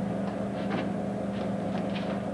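Steady low electrical hum of the recording and room, with a few faint, brief soft sounds scattered through it.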